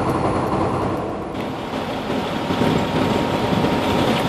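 Semi-truck running down the road, heard from inside the cab: a steady engine and road rumble, with a high hiss that stops about a second in.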